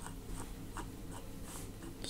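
Faint clicks at an even pace, about two or three a second, from a computer being worked, over a low steady hum.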